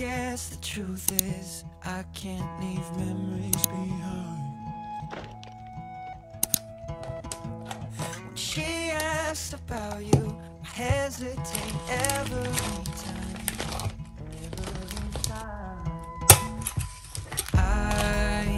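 Background music, a soft pop song, with a few sharp clicks and taps from a frosted plastic binder and its sleeves being handled.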